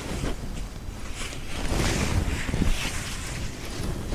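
Mercerised cotton saree rustling as it is unfolded and spread out by hand: a few soft swishes of cloth.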